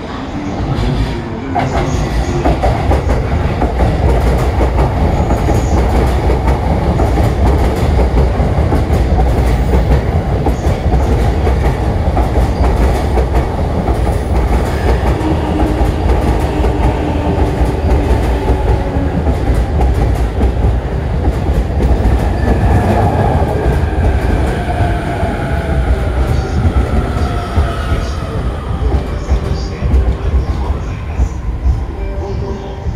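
An orange-and-green electric commuter train pulling into the platform, passing close by with a heavy low rumble and wheels clattering over the rails. A faint falling whine comes in over the last several seconds as it slows.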